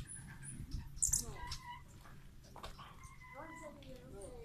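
Hummingbirds chirping at the feeders: two short, very high-pitched chips near the start and a louder high burst about a second in, with quiet voices underneath.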